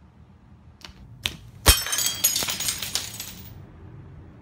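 Glass shattering, hit by a slingshot shot: a couple of faint clicks, then a sharp crash about a second and a half in, followed by shards tinkling and falling for nearly two seconds.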